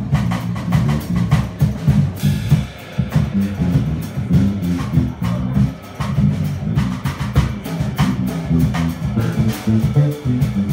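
Live jazz combo playing an instrumental passage of a bossa nova: electric bass guitar walking through notes under a drum kit with steady cymbal strokes, with piano.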